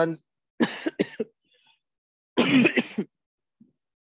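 A man coughing twice: a short cough about half a second in, and a longer one past the two-second mark.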